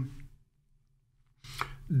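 A man's drawn-out 'and' trailing off, then a pause of near silence, then a couple of short clicks near the end just before he speaks again.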